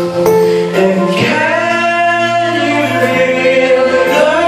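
Karaoke: a voice singing into a microphone over a backing track, holding one long, slightly wavering note through the middle.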